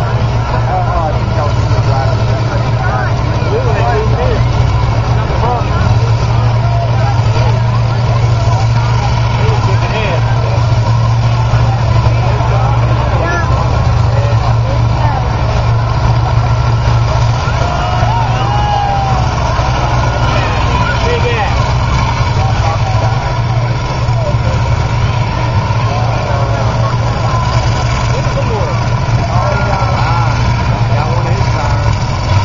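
Engines of several combine harvesters running steadily under load as the machines push against each other, a heavy low drone, with crowd voices calling out over it.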